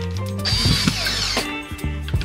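Cordless drill-driver running in one short burst of about a second, driving a screw into a white furniture panel, over background music.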